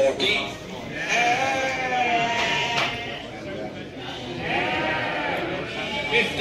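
Lambs bleating in a crowded pen: one long bleat about a second in, then another shortly before the end, over a general hubbub.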